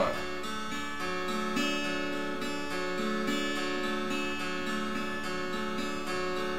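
Acoustic guitar in open D tuning fingerpicked in a steady triplet pattern (thumb, thumb, finger), the open strings ringing on under the repeated plucks.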